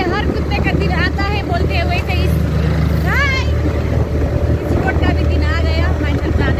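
Motor scooter engine running with a steady low drone while riding, with wind rumble on the microphone and people talking over it.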